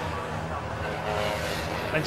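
Citroen 2CV race cars' air-cooled flat-twin engines running at speed as they come past, a steady engine note.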